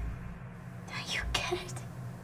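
A whispered voice, breathy and short, over a steady low hum.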